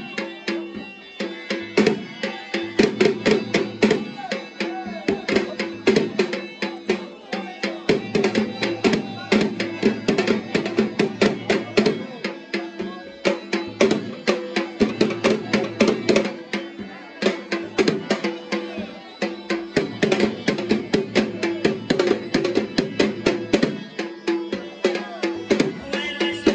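Pashto attan music: a dhol drum beaten in a fast, steady rhythm over a sustained melody line that holds the same notes throughout.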